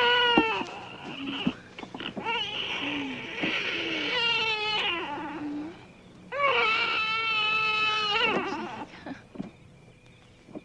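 A baby crying: a wail that breaks off about half a second in, several shorter cries, then one long, high wail near the end.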